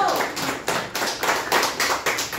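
A small group of people clapping their hands in quick, even applause at the end of a song.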